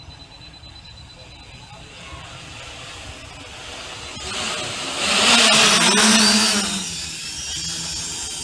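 Home-built quadcopter's 1400 kV brushless motors and propellers whirring as it comes down to land, growing louder, loudest for a second or two just past the middle, then easing off.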